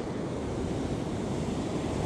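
Ocean surf breaking and washing up a sandy beach, a steady rushing wash, with wind buffeting the microphone.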